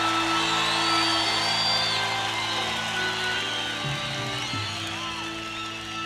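Live keyboard solo: a sustained keyboard chord drones, with high wavering tones sliding over it and a few low notes shifting about two-thirds of the way through.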